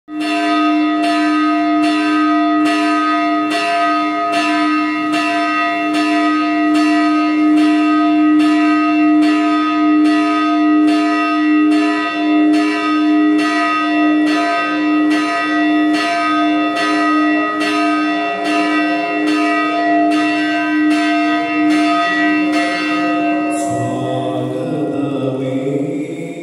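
Church bell ringing steadily, struck a little more than once a second so its tone never dies away; the strokes stop shortly before the end.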